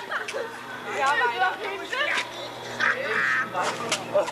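Young people's voices: excited, unintelligible calling and chatter, with a steady low hum underneath.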